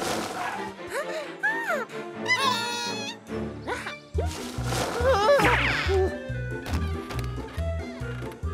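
Cartoon soundtrack: squeaky, wordless character voices chattering and exclaiming over background music, with a steady bass beat coming in about halfway.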